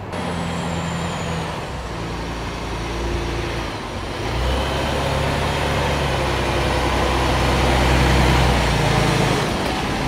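Heavy fire-service truck's diesel engine running with a deep, steady drone, growing louder about halfway through and at its loudest near the end as the hazardous-materials truck moves close by.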